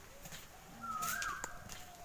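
A bird calling: one drawn-out whistled note that rises briefly and then holds steady for about a second, starting near the middle.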